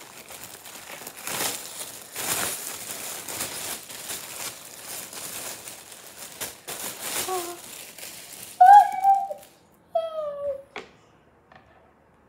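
Wrapping paper crinkling and tearing as a parcel is unwrapped by hand, for about eight seconds. Near the end a child gives two short, loud vocal sounds, the second falling in pitch, followed by a single sharp click.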